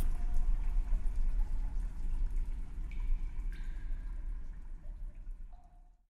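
A dark ambient sound bed: a low, steady rumble with faint dripping, fading away toward the end.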